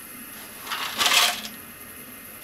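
An unopened instant noodle cup being turned over in the hands: the dry contents shift and rattle inside while the plastic wrap crinkles. There are two short bursts about a second in, the second louder.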